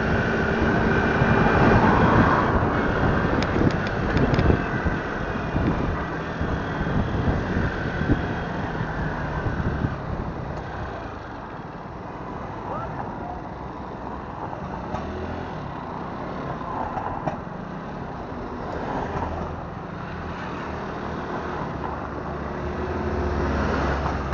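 Motorbike or scooter riding through town traffic: its engine running under steady road and wind noise, louder in the first few seconds and quieter from about ten seconds in.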